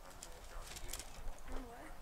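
Low, murmured voices with a few soft rustles and clicks as pages of paper Bibles are leafed through.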